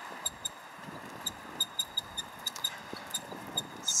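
Scattered faint clicks, several a second, over a low hiss, as a computer mouse is clicked to start the videos.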